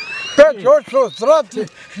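Only speech: a man talking fast in short, evenly repeated syllables.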